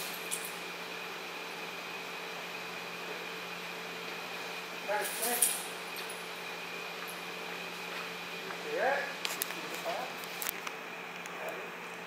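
Steady electrical or fan hum of the room, with a knock and snatches of faint voices about five seconds in, and a few more clicks and voice fragments from about nine seconds in.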